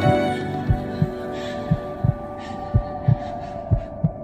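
Soundtrack heartbeat effect: low double thumps, about one pair a second, over a sustained music drone.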